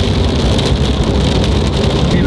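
Steady low road rumble and tyre noise inside a car driving through a rainstorm, with rain striking the car as a scatter of light ticks.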